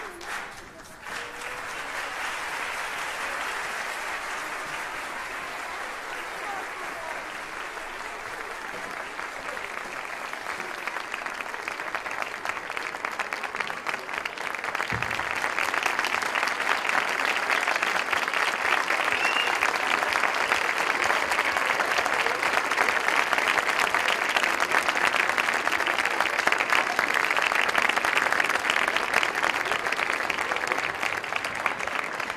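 Large theatre audience applauding, a dense steady clapping that swells louder about halfway through and stays loud.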